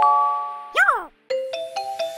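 A chime-like jingle: several held bell notes ring and fade, a quick swooping sound rises and falls about a second in, and after a brief silence new chime notes start stepping in.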